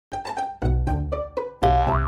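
Short cartoon-style logo jingle: a quick run of separate bright pitched notes, then a longer held note near the end whose pitch begins to wobble up and down.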